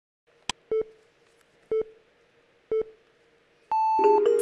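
Game-show countdown timer sound effects: a click, then three short electronic beeps about a second apart, then a longer, higher beep near the end.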